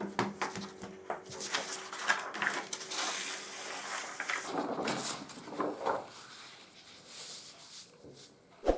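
Large sheets of stiff black pattern paper rustling and crackling as they are lifted, slid across a table and laid flat, with scattered light taps; the rustle is densest in the middle and fades toward the end.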